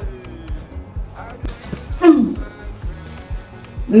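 Background music with a steady beat, with a brief voice about two seconds in.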